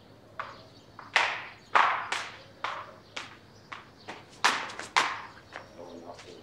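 Hard-soled footsteps on a stone floor: sharp, ringing knocks about twice a second, some much louder than others.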